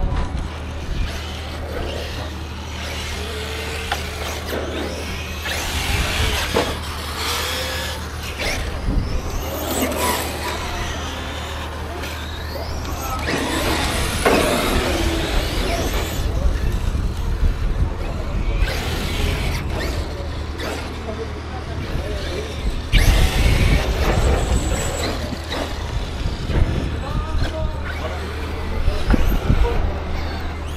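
Several radio-controlled cars running on an asphalt track, their motors whining up and down in pitch as they accelerate and brake. A steady low hum sits underneath.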